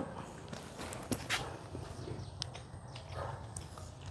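A few faint, scattered taps and clicks from a cloth tape measure being handled and wrapped around a potted apricot tree trunk, over a low steady background hum.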